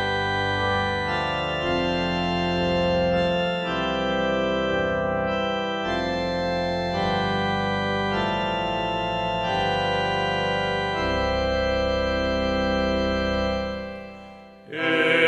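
Organ playing slow, sustained chords that change every second or two, fading away near the end.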